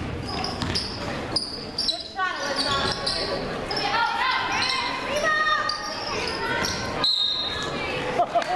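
Basketball dribbled on a hardwood court during live play in a large gym, amid players' and spectators' voices.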